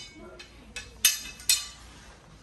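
Metal bookcase frame bars knocking together as they are handled: two sharp clinks about half a second apart, with a fainter tap just before.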